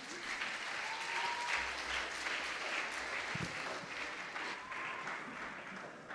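Audience applauding in a large hall just after an orchestra and choir piece ends, a steady, moderate patter of many hands clapping.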